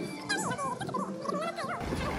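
A woman's voice sped up into fast, high-pitched chipmunk-like chatter.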